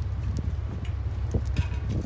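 A few light, scattered knocks over a steady low wind rumble on the microphone.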